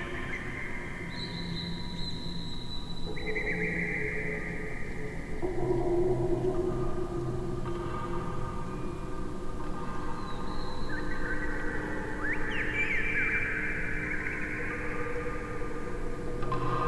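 Electroacoustic music made from layered, much slowed-down bamboo and metal wind chime recordings: long held chime tones at several pitches enter one after another and overlap, with mild dissonance between some notes.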